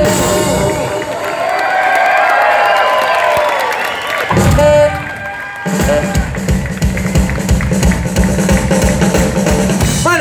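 Live rock band playing loudly, with long, bending voice or instrument notes over the first few seconds, a loud hit about four seconds in, then a fast, steady drum kit beat from about six seconds in.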